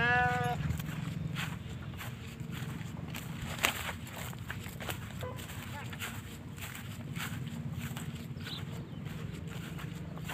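A young bull calf gives one short, high-pitched call right at the start, rising and then held for about half a second. A low steady hum runs underneath, with scattered clicks and one sharp knock a little under four seconds in.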